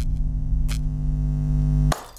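Outro music sting: one held electronic note over a low rumble, with a short sharp hit partway through, cutting off suddenly near the end.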